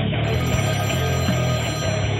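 Theme music with a telephone ringtone sounding over it, the ring's bright upper part switching on shortly after the start and off near the end.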